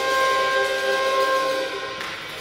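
Trumpet and saxophone holding one long sustained chord together over a small jazz combo; the held notes fade out near the end.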